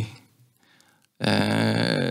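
A man's speech breaks off, followed by a short pause. About a second in, he makes a drawn-out, steady hesitation sound (a filled pause, "ööö") before going on with his sentence.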